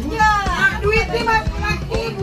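Several children's voices talking and calling out over one another, with music in the background.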